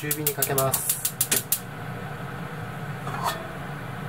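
Gas hob burner being lit: its igniter clicks rapidly for about a second and a half until the flame catches. A short scrape or knock comes near the end.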